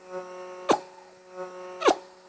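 Vacuum cupping machine's suction humming steadily in two short stretches, each cut off by a sharp pop as the glass cup's seal on the oiled skin breaks.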